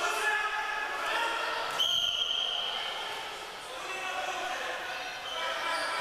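Many voices chattering in a large, echoing sports hall, with a single whistle blast about two seconds in that lasts about a second, typical of a wrestling referee's whistle.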